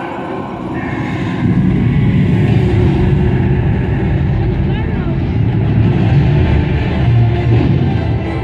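Projection-show soundtrack played loud over outdoor speakers: music mixed with voices, swelling about one and a half seconds in with a heavy low rumble.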